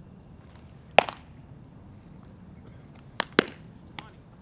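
Baseballs popping into leather gloves: one sharp pop about a second in, then two more in quick succession near the end.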